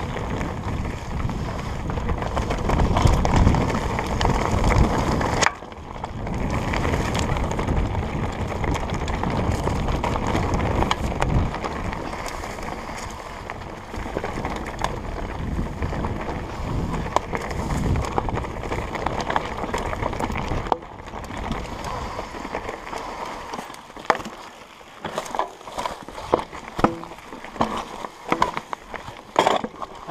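Trek Slash 8 mountain bike riding down a rocky dirt singletrack: knobby tyres rolling over dirt and stones, with the rattle of the bike. The noise stays steady for most of the time, then drops in the last few seconds, where separate clicks and knocks stand out.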